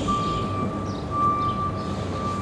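Outdoor background sound: a steady low rumble with a thin, steady high tone that drops out briefly now and then.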